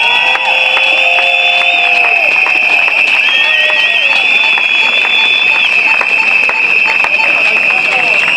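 A demonstrating crowd responding with whistles and horns over clapping and cheering. A shrill whistle tone holds steady throughout, and other held whistle and horn tones come and go, one warbling about three seconds in.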